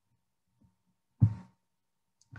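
A single short, dull thump about a second in, loudest in the low end and dying away quickly, picked up close to the microphone.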